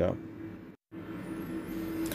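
A low, steady background hum with a faint, wavering high whine coming in near the end. The sound drops out completely for a moment about a third of the way in, where the footage is cut.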